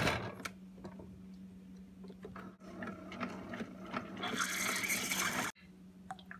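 Keurig 2.0 single-serve coffee maker being started and brewing: a sharp click as the brew button is pressed, then the machine's pump running. The pump sound grows louder in the last second and a half before it cuts off suddenly.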